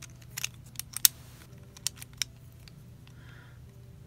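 Hard clear plastic crystal puzzle pieces clicking and tapping against each other as they are handled. There are a few sharp clicks in the first two and a half seconds, the loudest about a second in.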